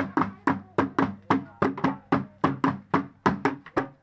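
Folk drumming on hand-held drums beaten with sticks: a fast, even beat of about four strokes a second, each stroke ringing briefly.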